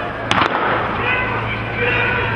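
Starting pistol fired for a sprint start: a sharp crack about a third of a second in, with a second crack close behind it.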